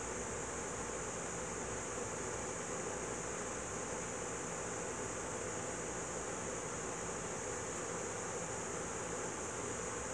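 A steady, unchanging hiss with no distinct events.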